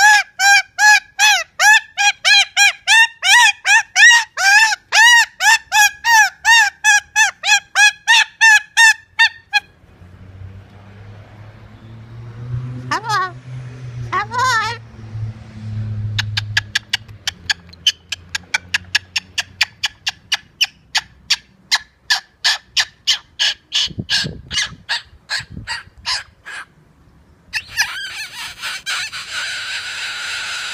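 Moluccan cockatoo calling in a fast series of loud, pitched honking squawks, about three or four a second, for the first nine seconds or so. After a quieter stretch with two rising whistles, a second quick run of shorter, sharper calls follows, ending in a harsh screech near the end.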